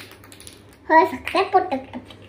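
Small plastic toy kitchen pieces being handled, giving a run of light clicks and taps. A girl speaks a few words in the middle.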